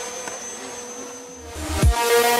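Steady whine of a remote-control foam jet's electric motor in flight. About a second and a half in, a rising whoosh swells into a deep boom with a falling sweep as electronic intro music starts.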